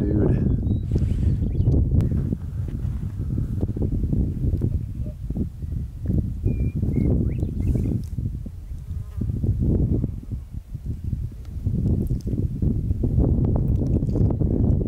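Wind buffeting the microphone outdoors: a gusty low rumble that swells and dips throughout.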